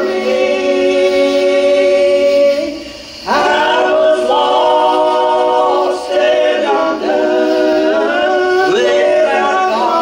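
Gospel group singing in harmony, holding long notes, with a short break between phrases about three seconds in.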